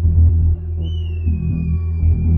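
Afro tech dance music from a DJ mix with the highs stripped away, leaving only the pulsing bass and kick. A thin high tone enters about a second in and glides slowly downward.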